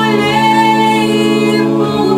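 A cappella vocal group of mixed male and female voices singing in close harmony, holding a sustained chord without words over steady low bass notes; an upper voice moves to a new note near the end.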